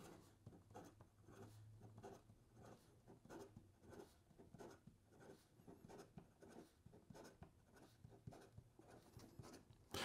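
Faint scratching of a fine stainless steel fountain pen nib on paper during fast writing, a run of short quick strokes. The nib has a fair amount of feedback and is not super smooth.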